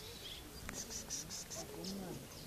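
A quick run of about six high-pitched chirps, lasting a little under a second, starting about half a second in.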